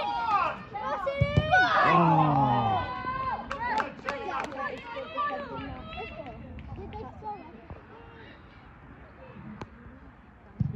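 Players and onlookers shouting and calling across an outdoor football pitch, several voices at once. The shouting is loudest in the first three seconds, with one lower voice falling in pitch about two seconds in, then thins to scattered calls and a few sharp knocks.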